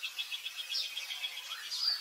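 Birds chirping in the background: a rapid high trill of about nine notes a second through the first second and a half, then a high chirp near the end.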